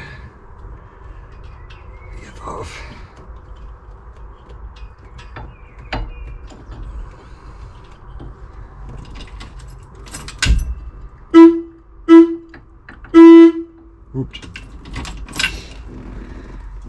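VW T2 bus horn tested from the cab after fitting the horn button on a new sports steering wheel: two short toots and then a longer one, well past halfway. Before them, scattered clicks and knocks of hand work at the steering-wheel hub.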